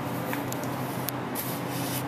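Soft rubbing and a few brief faint clicks and rustles of hands handling things close to the microphone, over a steady low hum.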